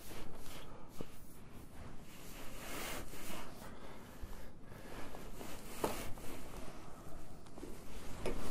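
Scratchy rustling and scraping of loose hay in a plastic barrel feeder, with a couple of sharp clicks about a second in and near six seconds.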